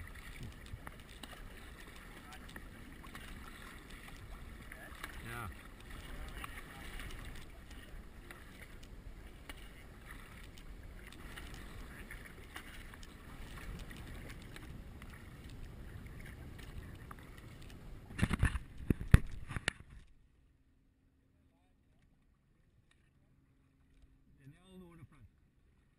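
Sea kayak being paddled on calm water: steady water and wind noise with paddle strokes in the water. A cluster of loud knocks comes near the end, then the sound cuts off abruptly to silence for the last few seconds.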